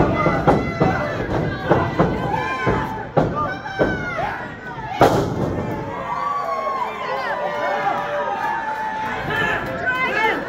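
Wrestlers' bodies thudding onto the ring mat in a string of impacts, the loudest and sharpest about halfway through, under the shouting and cheering of a small crowd.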